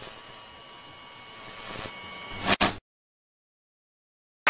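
Steady low hiss with a faint electrical hum, cut off by a sharp click about two and a half seconds in, after which there is dead silence.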